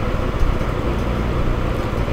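Steady low background noise with hiss, and no distinct events: the recording's room or mic noise between narrated sentences.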